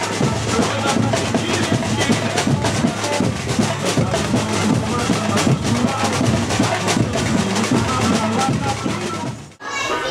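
Samba music with a percussion section playing a busy, steady beat and a voice singing over it. It cuts off abruptly near the end.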